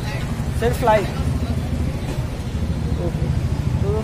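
Steady low rumble of street traffic, with a brief snatch of voices about half a second to a second in.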